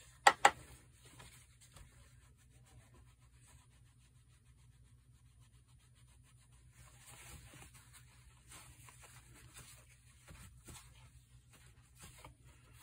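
Two sharp clicks just after the start, then faint rubbing and rustling of a brush and paper towel working on watercolor paper, a little busier from about seven seconds in.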